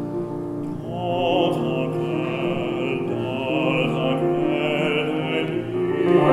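Baritone singing an art song (Lied) with a full, vibrato-rich voice over piano accompaniment; the voice comes in about a second in and carries on with held notes.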